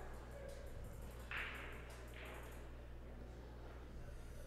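Quiet room tone with a steady low hum, broken by two short, soft hissing scuffs about a second apart near the middle.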